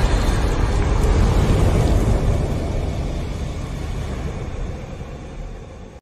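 Deep, pitchless rumble of a fire-themed logo-sting sound effect, dying away steadily over several seconds.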